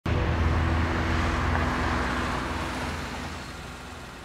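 A car engine running with tyre and road noise, loud at first and fading steadily over about three seconds.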